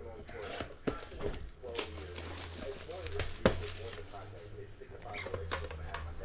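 A small metal trading-card tin being handled and opened: a few sharp clicks and knocks from the tin and its lid, with light rustling in between.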